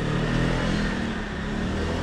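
Street traffic: a motor vehicle engine running close by, a steady low hum that eases slightly near the end.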